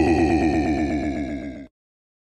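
A held, many-toned electronic sound with a rapid flutter, fading slightly and then cut off abruptly under two seconds in: the closing audio sting of an edited promo.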